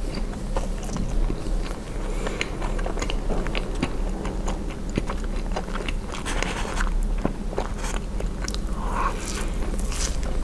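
Close-miked chewing of soft marshmallow, with many small wet, sticky mouth clicks. About six seconds in, a marshmallow is pressed and dragged through a smear of pink sauce on a slate board, a soft sticky scrape.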